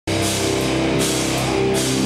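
Live heavy rock band playing: distorted electric guitars and bass holding chords over a fast pulse in the low end, with cymbals struck about every three-quarters of a second.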